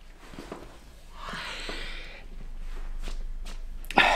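Quiet, unpitched movement and breathing noises from a man seated in an armchair, with a longer breathy hiss about a second in.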